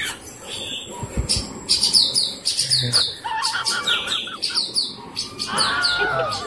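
Small birds chirping in a quick run of short, high notes, each sliding down in pitch, several a second.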